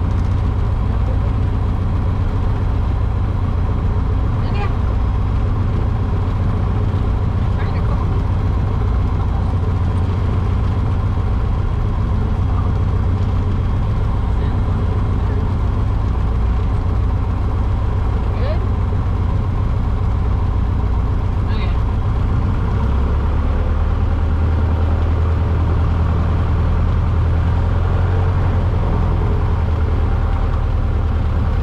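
Light airplane's piston engine and propeller running steadily at low power, heard inside the cabin as a low drone. The engine note shifts about two-thirds of the way through, with a few faint clicks.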